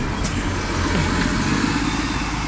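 A road vehicle's engine running steadily nearby.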